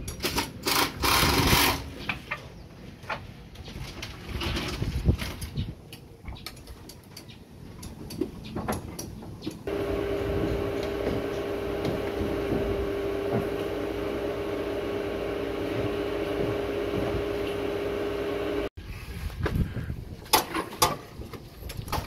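Plastic clicks and knocks from handling a solar panel's junction box and its broken connector latches. Then a solar inverter's steady electrical hum with one held tone for about nine seconds, which cuts off suddenly.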